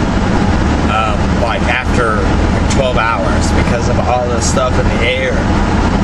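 Steady low road and engine rumble inside the cab of a moving truck, with a man's voice talking over it.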